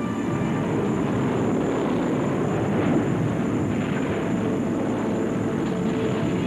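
Propeller aircraft engines running with a low, steady drone.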